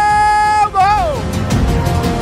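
A football commentator's long, held goal shout on one high pitch, ending in a falling glide about a second in. Background music with a steady beat follows.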